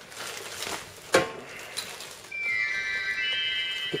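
A key clunks into a wall-mounted novelty lock about a second in, then a bright chiming jingle starts playing from the lock, its ringing tones entering one after another and holding.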